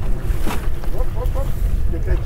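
Low rumble of a boat's engine running slowly, with wind on the microphone, and a splash about half a second in from a hooked mahi thrashing at the surface alongside the boat.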